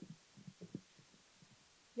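Faint low thuds and rubbing of a handheld microphone being handed from one person to another, in the first second, then near silence.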